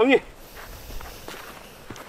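Footsteps on artificial turf, heard as faint, irregular soft steps as several people walk across the pitch, after a man's short spoken word at the start.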